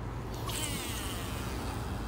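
Baitcasting reel spool spinning out line during a cast: a fine whirring whine that starts about half a second in and falls in pitch as the spool slows.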